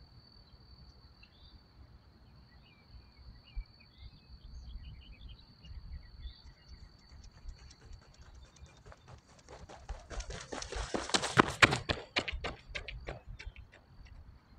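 Running footsteps of a sprinter on a rubber track, coming closer and louder in quick even strides, loudest shortly before the end, then fading fast as they pass. A steady high chirring of crickets runs underneath.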